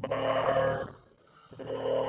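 A man's voice making two long, wordless vocal sounds, each held at a steady pitch. The second starts about a second and a half in.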